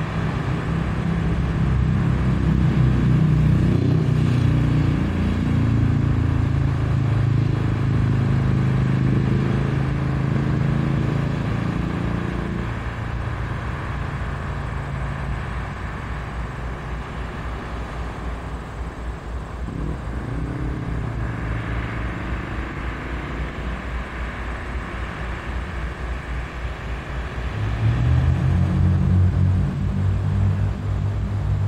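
BNSF GE C44-9W diesel locomotive engine running under power as it leads a train slowly through the yard. It works loudly for about the first twelve seconds, eases off to a lower note, and throttles up loudly again near the end.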